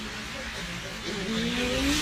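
Steady background noise, with a vehicle engine rising in pitch and growing louder over the second half, like a car accelerating past.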